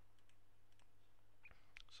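Near silence with a faint low hum and a few faint, short computer mouse clicks.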